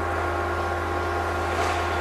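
Steady low hum of room tone, unchanging, with a few faint steady tones above it.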